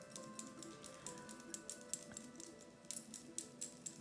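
Faint background music with held notes, over a scatter of light ticks and taps from a brush mixing paint in a watercolour palette.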